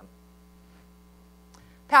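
Steady low electrical mains hum in the sound system during a pause in speech, with a few fainter steady tones above it; a woman's voice starts again right at the end.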